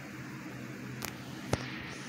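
Quiet room hiss with a faint steady hum, broken by two small clicks about half a second apart, just past the middle.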